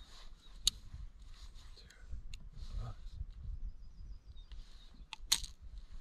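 Sharp metal clicks and clinks of fishing pliers and lure hooks while deeply wedged hooks are worked out of a pike's mouth: one click about a second in and a louder one near the end.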